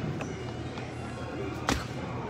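Large-store ambience: a steady low hum with faint background music, and one sharp knock about three-quarters of the way through.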